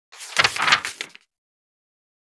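Short swoosh transition sound effect, about a second long, swelling twice.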